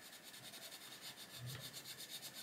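Faint rubbing of a soft Arteza Expert coloured pencil shading on paper.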